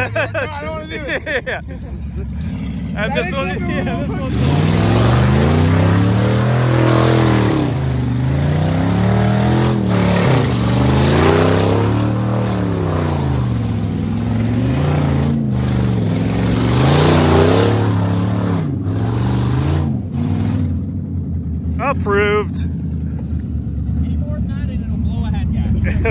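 Dodge Ram 1500 pickup's engine revving up and down over and over, its pitch rising and falling about every two seconds, as the truck spins donuts in mud with its rear wheels spinning and flinging dirt. Near the end the engine settles back to idle.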